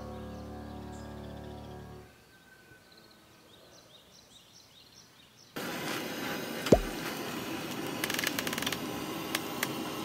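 Soft piano music ends about two seconds in, leaving faint bird chirps. From about halfway a portable gas camping stove burns with a steady hiss under a pot, with a sharp knock and a run of light clicks and rustles as the pot is worked at.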